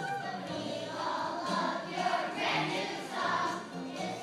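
A choir of first-grade children singing together, with sung notes changing throughout.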